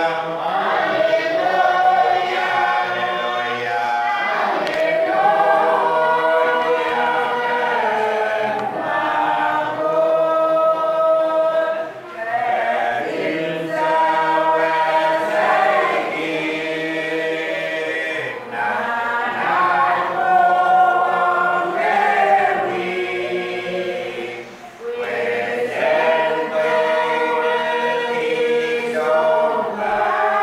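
A church congregation singing a hymn together, sustained sung phrases with short breaks between them.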